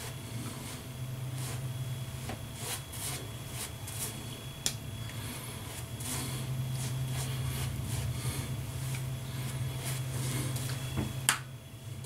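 A lather-loaded shaving brush being worked over a week's stubble, making soft, irregular squishy brushing strokes over a low steady hum. There is a sharper light knock near the end.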